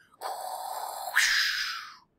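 Sci-fi UFO abduction sound effect: a steady, layered electronic hum for about a second, then a hissing whoosh that fades away.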